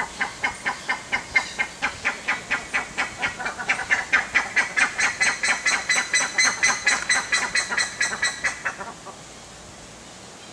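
A bird calling in a fast run of loud repeated notes, about four or five a second. The notes quicken and rise in pitch about halfway through, then stop near the end.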